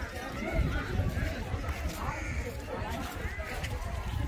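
Indistinct voices of people talking, none of it clear words, over a steady low rumble.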